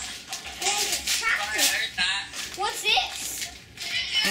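Indistinct children's voices talking and exclaiming.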